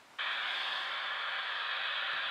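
Steady radio-static hiss from a phone speaker, cutting in suddenly about a fifth of a second in and holding at an even level: the spirit-board app's static effect while a letter is being read.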